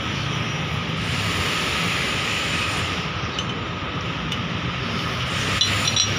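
Steady low drone of running machinery, with a few faint metallic clicks as a steel shackle and chain rigging are handled.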